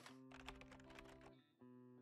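Very faint intro jingle: a few held synth-like notes that change a couple of times, with light clicking ticks over them and a brief drop-out about a second and a half in.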